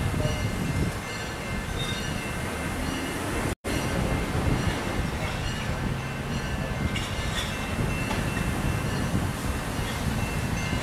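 Slow-moving freight train: a steady low diesel locomotive rumble with thin, steady high-pitched wheel squeal over it. The sound cuts out for an instant about three and a half seconds in.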